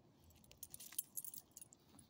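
Light metallic jingling of a small dog's collar tags and leash clip, a quick cluster of ticks densest about a second in, as the dog rolls off its back and gets to its feet.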